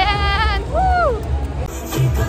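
A person's voice quavering with a rapid wobble in pitch, then a short sound that slides up and back down, over background music and a steady low rumble.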